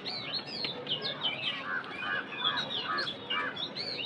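Birds chirping in the background: short high chirps scattered throughout, and a run of evenly spaced lower notes, about three a second, from about a second and a half in.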